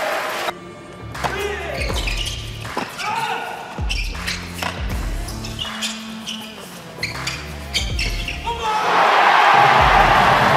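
Tennis doubles rally: repeated sharp racket-on-ball hits and ball bounces on an indoor court, over background music with a steady bass line. About nine seconds in, the rally ends and a crowd breaks into loud cheering and applause.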